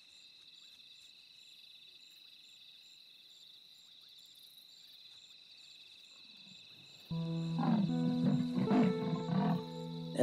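Faint steady chirring of night insects. About seven seconds in, guitar music comes in suddenly and loudly, with a leopardess's rasping calls repeating about every half second under it: a mother leopard calling for her lost cub.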